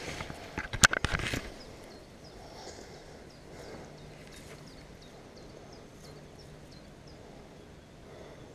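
A few sharp knocks and splashes in the first second and a half as the landing net and barbel are handled in shallow water, then quiet riverside ambience with a small bird chirping faintly about twice a second.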